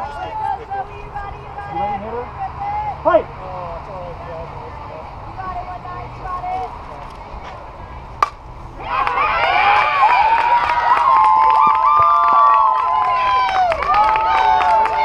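Voices chattering, then one sharp crack of a bat hitting a fastpitch softball about eight seconds in. Loud cheering and yelling from players and spectators follows right away.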